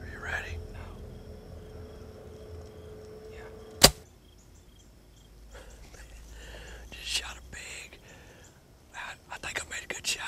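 A bow fires an arrow into a hog: one sharp, loud crack about four seconds in, with low whispering before and after.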